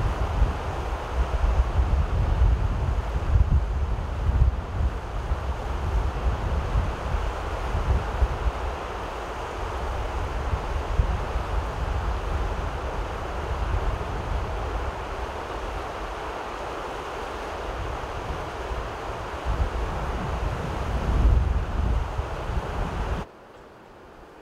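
Fast mountain river rushing over rocks, a steady wash of water noise, with wind buffeting the microphone in gusts. It cuts off suddenly near the end, leaving a much quieter background.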